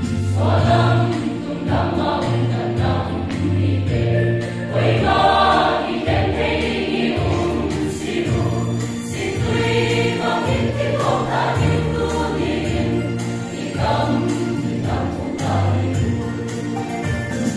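Mixed choir of men and women singing a Christian hymn together, many voices holding sustained notes.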